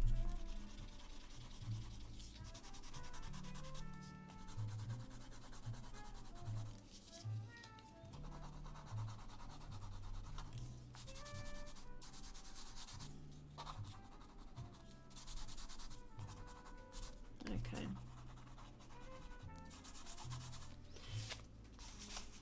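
Soft pastel sticks scribbled and rubbed across pastel paper: a dry, scratchy rasp in many quick, uneven strokes.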